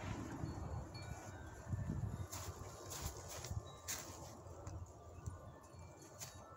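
Quiet handling sounds as a flintknapper sets down his leather lap pad and stone and gets up from the chair: low rustling, with a few sharp knocks a little after two seconds in and near four seconds. Short, high ringing tones come and go through it.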